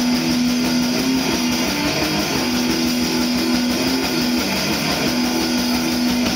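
Heavy metal band playing live on electric guitar, bass guitar and drum kit, with long held guitar chords that change every second or two over steady drumming.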